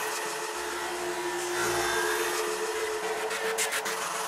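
A hair dryer running with a steady rushing noise, with faint music underneath.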